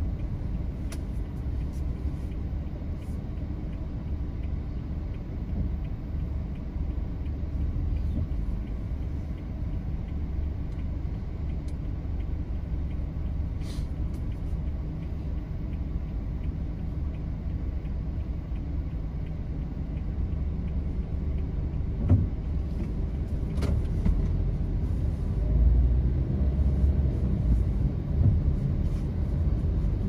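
Steady low rumble of a car moving slowly in stop-and-go city traffic, heard from inside the cabin, with a few faint clicks. The rumble grows a little louder in the last few seconds.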